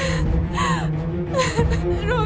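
A woman crying in distress: gasping breaths at the start and again about halfway through, with short wavering sobbing cries between them, over a steady low background music drone.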